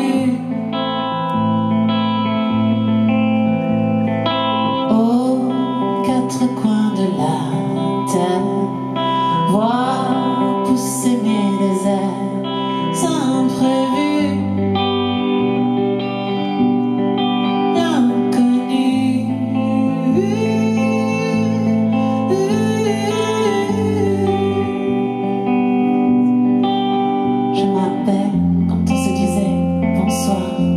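Live band music led by guitar: held chords over low notes that change in steady steps, with a melody line that slides up and down.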